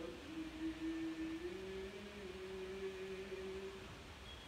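Orthodox liturgical chant: a long sung note held and rising a step about one and a half seconds in, over a lower steady drone note.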